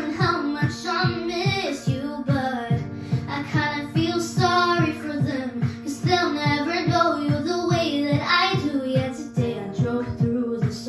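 A girl singing a slow pop ballad into a microphone over a backing track, with held low chords and a steady low pulse of about three beats a second.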